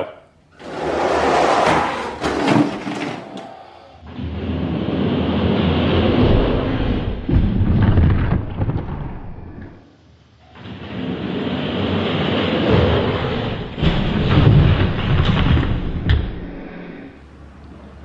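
Die-cast Hot Wheels monster trucks rolling and rattling down a plastic track, a rumbling run of about three seconds, followed by two longer, deeper stretches of the same rumble.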